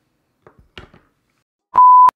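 A short electronic beep, one steady tone, loud and lasting about a third of a second near the end, of the kind used as a censor bleep. A few faint brief sounds come just before it.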